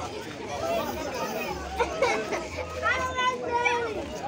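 Outdoor chatter of voices, children among them, with one voice holding a long high call from about two and a half seconds in until near the end.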